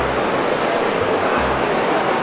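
Crowd babble in a large, busy hall, many voices blending together, with irregular low thuds underneath.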